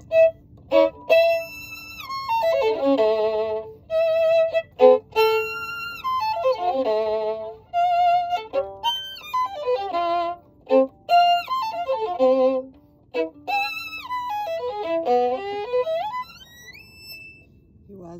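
Solo violin playing short, lively phrases with slides, quick descending runs and trills, broken by brief pauses; it stops about a second before the end.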